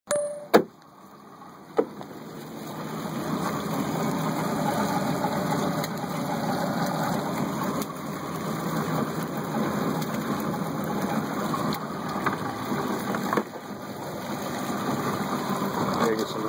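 An engine idling with a steady rumble. Two sharp knocks come in the first two seconds.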